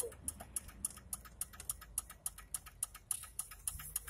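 Low road rumble inside a moving car's cabin, with a quick, uneven run of light ticks, several a second.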